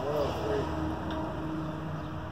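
A faint, brief voice near the start over a steady background hum of nearby highway traffic.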